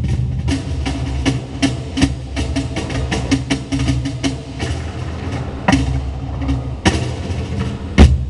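Three cajóns played together by hand: a fast stream of slaps on the wooden front plates over deeper bass tones, with two heavier accented hits in the second half.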